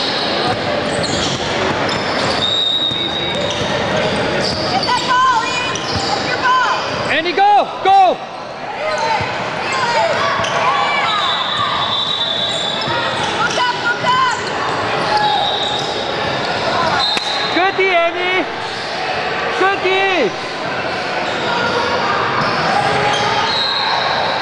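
Youth basketball game sounds in an echoing gym: a ball bouncing on the hardwood court and sneakers squeaking sharply several times, with children's and spectators' voices underneath.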